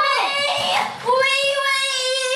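A girl's high voice singing wordless notes: a short falling phrase, then one long note held steady from about halfway in.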